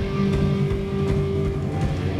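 Live heavy metal band playing an instrumental passage on distorted electric guitar, bass guitar and drums, with a long held note through most of it.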